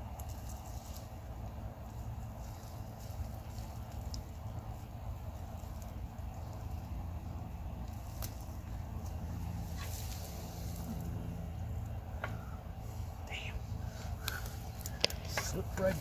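Soil, dry vine stems and mulch crackling and rustling as sweet potatoes are worked loose and pulled up by hand, with a few sharp snaps from about halfway through, over a steady low outdoor rumble.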